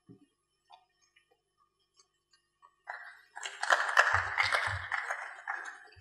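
A few faint ticks in near silence, then audience applause that starts about three and a half seconds in and dies away after a couple of seconds.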